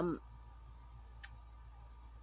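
A single sharp click about a second in, a long fingernail tapping the roll of washi tape being handled, over a faint steady low hum.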